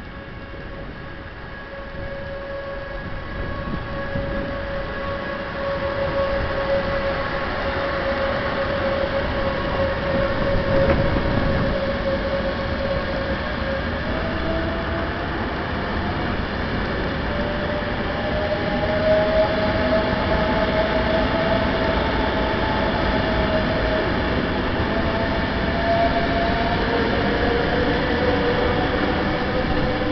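EuroCity electric trainset pulling out and running past close by, growing louder. Its motors give a steady whine, then several whines rising in pitch as it accelerates, over a rolling rumble.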